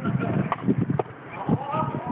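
Sepak takraw ball being kicked back and forth: sharp, hollow knocks about every half second. A player's voice calls out near the end.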